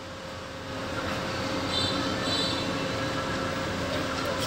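A car's cabin ventilation fan blowing steadily, growing a little louder about a second in, with a faint steady hum.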